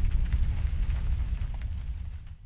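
The rumbling tail of an explosion sound effect, a deep rumble with scattered crackles, dying away toward the end.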